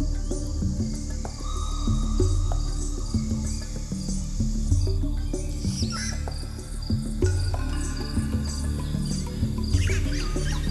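Insects chirping in high, rhythmic pulses over background music with a low line of held notes.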